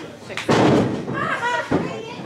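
Bodies hitting a wrestling ring's mat: a loud thud about half a second in and a sharper one near the end, amid spectators' shouting.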